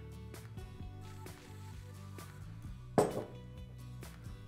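Background music with a steady beat. About three seconds in comes a single sharp knock: a pepper mill set down on a wooden chopping board.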